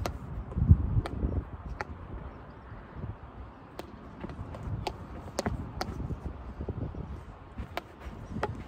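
Field hockey stick striking a ball on artificial turf: sharp single clicks, about eight of them spread unevenly over several seconds, over low uneven thumps and rumble.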